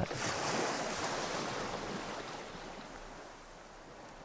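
Ocean surf and wind sound effect: a steady rushing noise that starts abruptly and fades out gradually.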